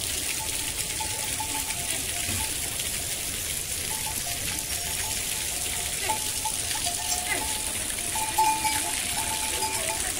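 Heavy rain falling steadily, a continuous hiss, with faint wavering tones coming and going over it.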